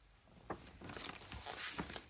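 Glossy paper poster rustling and crinkling as it is handled and moved aside, with a few sharp crackles, loudest about three-quarters of the way through.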